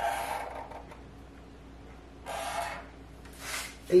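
Pen drawing lines along a ruler on a painted barn quilt board: three short scratchy strokes, each about half a second, one at the start, one about two seconds in and one near the end.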